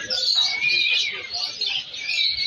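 Many caged birds chirping at once: a dense, continuous chorus of short high chirps, with one longer steady whistle near the middle.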